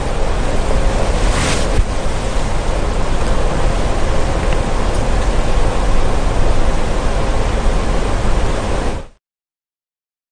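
Steady loud hiss with a low rumble, an even noise without clear voices or tones. It cuts off suddenly near the end.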